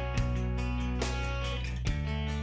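Background music: guitar-led track with a steady bass and plucked notes.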